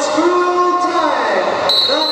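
Voices talking and calling out in a large echoing sports hall, with a shrill steady whistle blast starting near the end, typical of a roller derby referee's whistle.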